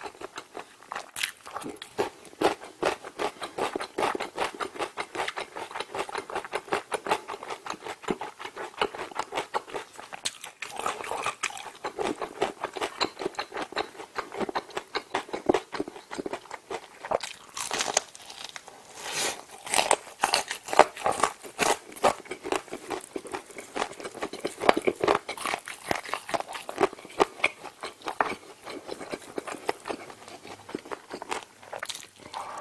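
Close-miked biting and chewing of sauce-coated fried chicken, an unbroken run of mouth clicks, smacks and crunches that grows busier and louder a little past the middle.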